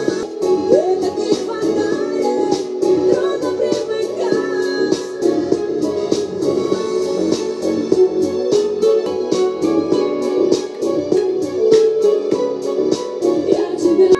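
Russian pop song playing: a steady electronic beat under synth keyboards, with a woman singing.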